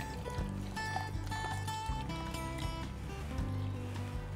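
Instrumental background music with a slow melody of held notes.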